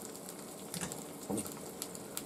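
Eggs frying in butter in an overheated pan: a faint sizzle with scattered small crackles and spits.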